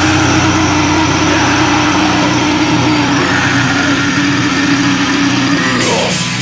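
Heavy metal song in a held, droning passage: a sustained distorted chord rings on with no drumbeat.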